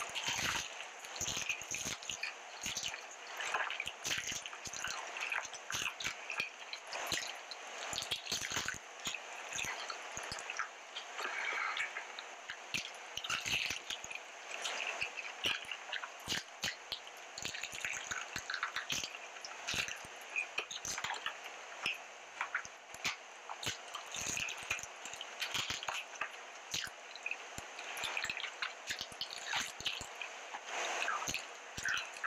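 Wet mukbang eating sounds: biting into and chewing a sauce-glazed fried chicken drumstick coated in cheese sauce, with sticky lip smacks and many small irregular clicks throughout.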